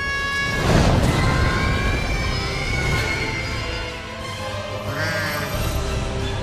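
Dramatic film music with a loud rushing blast of a spaceship's rocket engines about a second in, fading out over the next couple of seconds.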